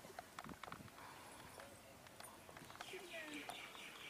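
Faint outdoor ambience with a few light clicks in the first second, then a bird chirping in a fast, evenly repeated pattern from about three seconds in.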